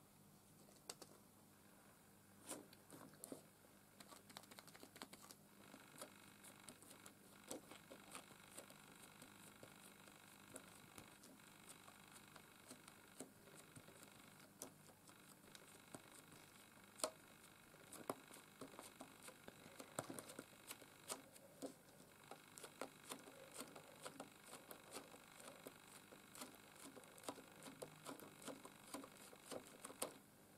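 Faint, irregular soft taps and rustles of a foam sponge dabbing white paint through a doily stencil, along with the stencil being pressed down and handled.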